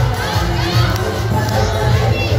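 Loud devotional jagran music with a heavy bass, and a dense crowd shouting and cheering over it.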